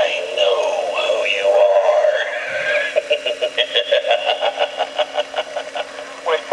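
Victorian spooky telephone Halloween prop playing its recorded sound effect through its speaker with the handset off the cradle: a warbling, eerie voice-like sound, then a rapid pulsing about five times a second from about halfway through.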